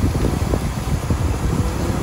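Wind buffeting the microphone as a steady low rumble.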